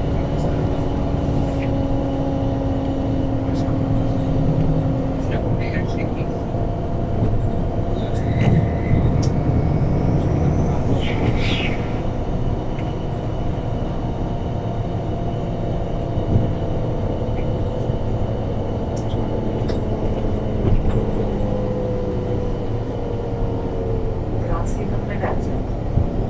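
A MAN NL313F CNG city bus heard from inside the cabin, with its E2876 natural-gas engine and ZF Ecolife automatic gearbox running. Several steady tones sit over a low rumble, changing pitch now and then and falling gently near the end.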